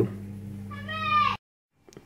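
A cat meowing once, its pitch rising a little and then falling, over a steady low hum; the sound cuts off abruptly just after the meow.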